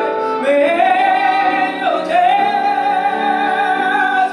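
A female vocalist sings live over a jazz band. She holds long notes with vibrato, sliding up to a high sustained note about half a second in.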